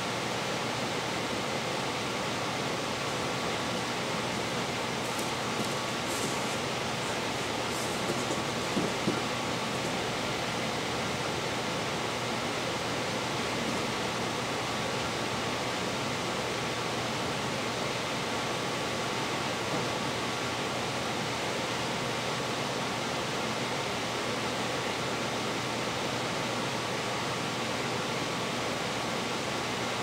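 Steady even hiss of room noise with a faint steady hum running through it, and a couple of faint ticks about eight to nine seconds in.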